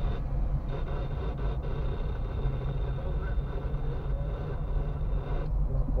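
Steady low engine and tyre rumble of a car driving in slow traffic, heard from inside the cabin.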